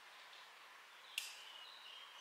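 Faint outdoor hiss, broken about a second in by one sharp click, then a few short high chirps.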